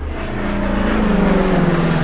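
Sound effect for an animated channel logo: a rushing whoosh with several falling tones. It starts abruptly and swells to its loudest about a second and a half in, then eases off.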